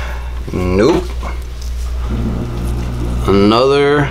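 A man's wordless vocal sounds: a short falling one about half a second in and a longer one near the end, over a steady low hum.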